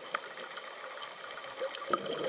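Underwater ambience in a lull between a scuba diver's breaths: many faint, scattered clicks and crackles over a low hiss, with the noise of breathing through the regulator starting again near the end.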